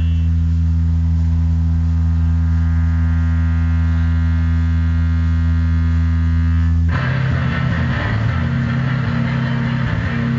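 Live rock band: amplified guitar and bass hold one steady, loud low drone whose upper overtones swell. About seven seconds in, the drums and the rest of the band come back in all at once and keep playing.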